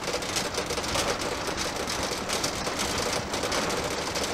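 Cab noise of a moving camping-car: steady engine and tyre noise with a dense, fast rattle of loose fittings.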